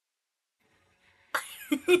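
Near silence, then about a second and a half in, a person's sudden short bursts of laughter around an exclaimed "oh my god".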